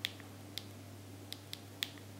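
Clicks of a Qumo 242 button phone's navigation key being pressed: about five short, sharp clicks, irregularly spaced, over a faint steady low hum.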